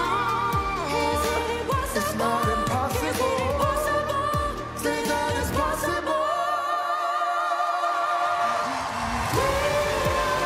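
Pop duet singing over a full backing band, the voices holding long, wavering notes. About six seconds in the bass and drums drop out, leaving a sustained held note, and they come back in near the end on a rising note.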